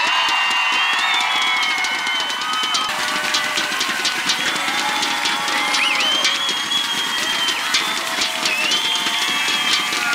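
Large crowd cheering, shouting and clapping without pause, many high voices held over a dense patter of claps.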